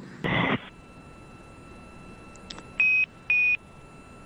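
A brief burst of radio static, then low hiss, then two short high beeps about half a second apart on the mission's air-to-ground radio loop. Such tones mark a radio transmission.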